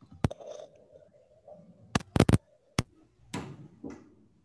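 Several sharp clicks and knocks over a video call: one early, a quick cluster of three about two seconds in, and another shortly after, then a brief scraping, rustling burst near the end.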